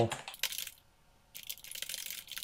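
Typing on a computer keyboard: a short run of rapid keystrokes, then a longer run starting about a second and a half in.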